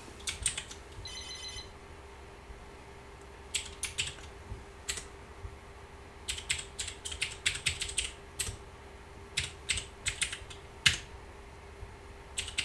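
Typing on a Commodore PET replica's computer keyboard: a few key clicks at the start, then runs of keystrokes from about three and a half seconds on, entering a command.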